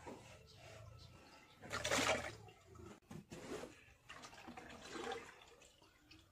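Liquid splashing and sloshing in a bucket as a cloth filter bag of fermented jakaba fertilizer sludge is squeezed and rinsed by hand, with the loudest splash about two seconds in and smaller ones after.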